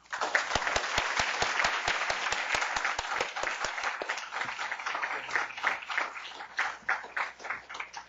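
Audience applauding a welcomed speaker, a dense run of clapping that thins out over the last few seconds into scattered single claps.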